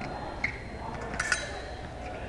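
Fencing blades clinking together: one sharp click about half a second in, then a quick cluster of two or three ringing metallic clinks a little after a second.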